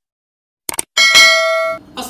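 Two quick clicks, then a bright bell-like ding with several ringing overtones that lasts under a second and cuts off suddenly.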